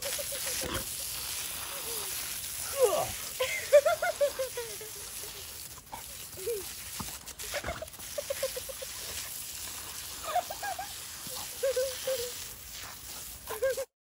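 Lawn sprinkler spray hissing steadily while a Doberman snaps at the water jets, giving short, wavering high-pitched whines in bursts, with a few sharp clicks along the way.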